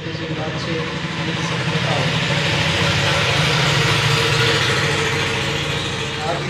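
A motor vehicle's engine passing nearby, swelling to its loudest about four seconds in and then fading, over a steady low hum.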